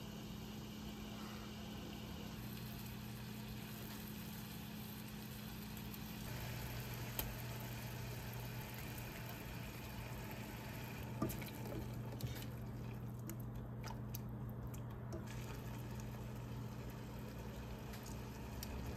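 Faint kitchen sounds over a steady low hum: a few soft spoon taps and clicks as passion fruit pulp is scooped into a saucepan of blueberries.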